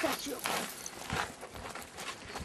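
Irregular scuffing footsteps of people picking their way slowly down a steep slope.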